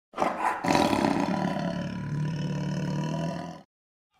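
A roar sound effect over a logo intro, lasting about three and a half seconds and cutting off suddenly.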